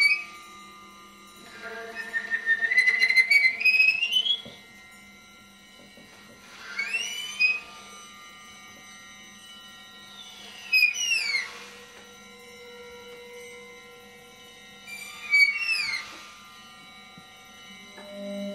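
Free-improvised music from soprano saxophone and percussion: whistle-like sliding pitches, one long rising glide near the start, then three shorter arching swoops about four seconds apart, over a faint steady low drone.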